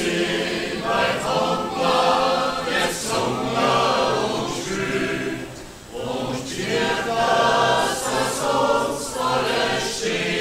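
Mixed choir of men's and women's voices singing a folk song in phrases, with a short pause for breath about six seconds in.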